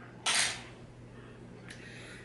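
A short scrape about a quarter second in as a spoon and a baby food jar are handled, then a faint click near the end.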